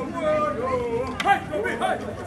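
Several people talking and calling out at once, their voices overlapping.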